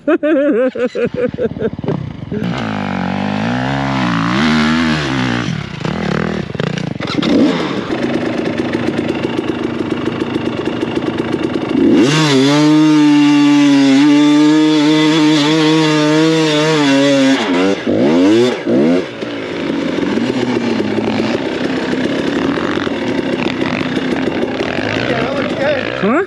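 Dirt bike engine revving up and down under load while climbing a steep hill. It is loudest and held at high revs for about five seconds in the middle, then drops to a lower, steadier run.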